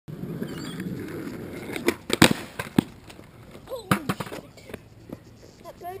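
Skateboard wheels rolling on concrete, then several sharp clacks of the board hitting the ground as the skater bails, the loudest about two seconds in. A short cry follows about four seconds in.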